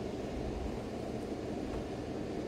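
Steady low background rumble with no distinct events, like a fan or heater running in the room.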